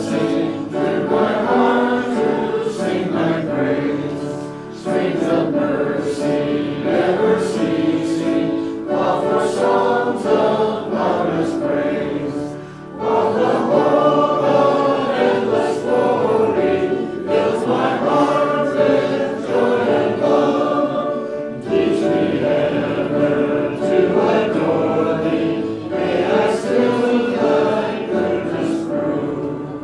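A congregation singing a hymn together in phrases, with short breaks between the lines.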